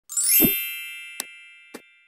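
Channel intro logo sting: a bright chime that opens with a quick rising sweep, then rings as a chord of high tones fading slowly over about two seconds, with a low thud under its start. Two short clicks fall about a second in and near the end.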